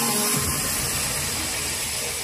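Audience applause in a large hall, heard as a steady wash of noise, with the last notes of the promotional video's music fading out just at the start.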